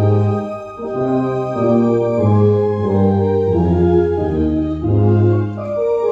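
MD-10 EVO electronic organ playing a hymn in slow, held chords over a strong bass line, the chords changing about once a second.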